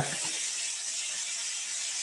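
Computer keyboard being typed on, a quick run of small key clicks.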